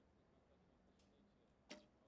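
Near silence, broken about three-quarters of the way through by one short, faint snap: a recurve bow being shot, the string releasing the arrow.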